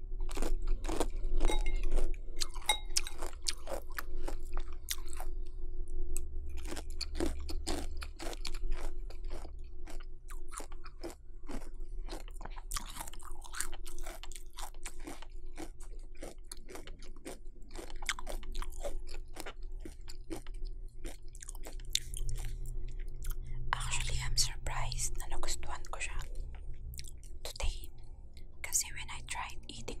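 Close-miked chewing of crunchy chocolate flake cereal: a dense, irregular run of crisp crunches, thickest a little past three-quarters of the way in.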